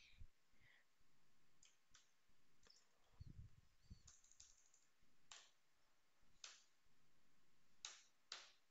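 Faint computer keyboard keystrokes and clicks, single strokes spaced about a second apart, with a soft low thump a little over three seconds in.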